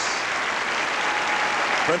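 Theatre audience applauding steadily at a curtain call.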